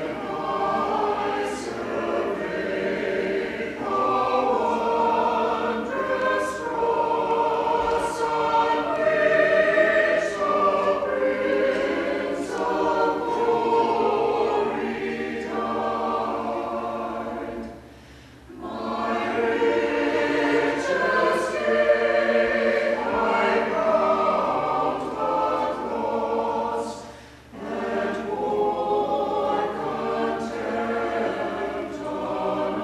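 Mixed church choir of men's and women's voices singing a choral piece, with short breaks between phrases about 18 and 27 seconds in.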